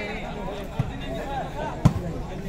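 Spectators chattering around a volleyball court, with the sharp smack of a hand striking the volleyball near the end and a smaller knock about a second earlier.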